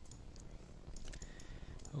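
A few faint, scattered clicks of a computer mouse.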